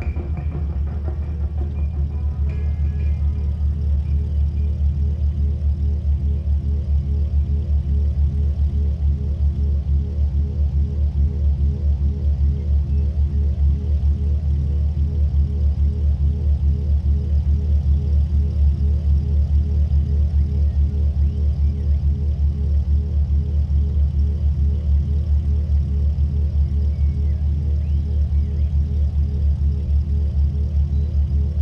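Ferrari 412 V12 engine idling with a low, steady, fast-pulsing throb.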